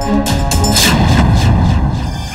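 A cartoon sound effect: a booming impact with a heavy low rumble about a second in, over loud action background music.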